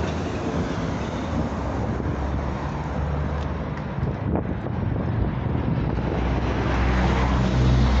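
Road traffic running past on a city street, a steady low rumble with wind buffeting the microphone; a passing vehicle swells louder near the end.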